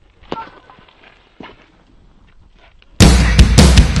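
Faint outdoor background with a few light knocks, then about three seconds in a sudden, very loud explosion-like burst with crackling pops: a dramatic trailer sound effect.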